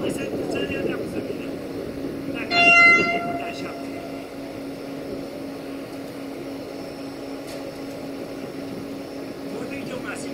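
An approaching electric multiple unit sounds one short horn blast about two and a half seconds in, a single high, steady note lasting under a second. A steady low hum runs underneath.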